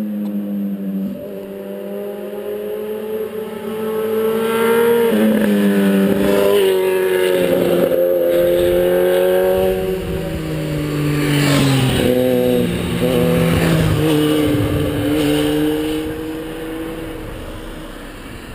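Honda CB1000R's inline-four motorcycle engine accelerating hard. Its pitch climbs in each gear and drops at each of several upshifts, then it fades away near the end.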